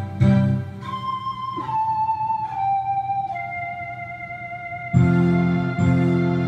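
Instrumental ending of a song's backing track, with no singing: a beat that stops under a second in, then a slow melody of held notes stepping downward, then a full sustained chord with bass coming in about five seconds in.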